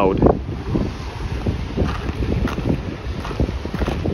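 Wind buffeting the microphone: an uneven low rush of noise with no pitch to it.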